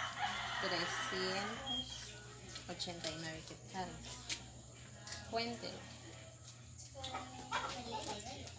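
A rooster crowing once near the start, one long call of about two seconds.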